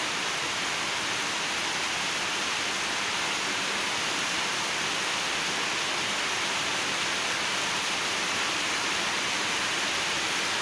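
Steady rain falling, an even hiss that does not let up or change.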